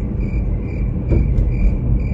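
Steady low road and engine rumble inside a moving car's cabin, with a short high-pitched chirp repeating about three times a second.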